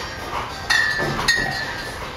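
Two sharp clinks of bar equipment being handled, about half a second apart, each ringing briefly.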